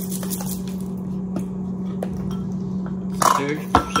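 A few light clicks and taps from a plastic squeeze bottle of ketchup being handled, over a steady low hum. A voice starts near the end.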